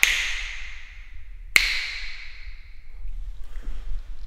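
Two finger snaps about a second and a half apart, each ringing out with a long reverberant tail in a bare, unfurnished room. This is a snap test of the room's acoustics: more reverb than expected, but no slap echo or standing waves.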